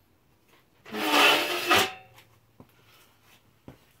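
A wooden board scraping against the wooden jaws of a workbench for about a second as it is pulled free, followed by a couple of light knocks.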